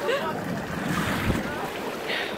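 Outdoor pool ambience: water splashing and the far-off voices of children and adults, with wind on the microphone and a low bump of handling a little past halfway.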